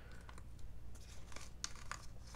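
A paper mailing envelope being handled and torn open by hand: faint crinkling with a few short rips in the second half.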